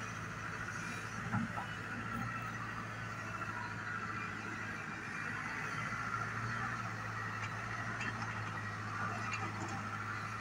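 A Hyundai Robex 145LCR-9A tracked excavator's diesel engine running steadily as the boom, arm and bucket are moved.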